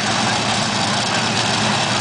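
Steady din of engines running at a drag strip, with crowd noise mixed in; no launch or sudden event.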